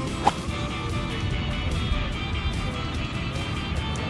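A single sharp crack of a vintage golf club striking a ball on the range, about a third of a second in, over steady background music.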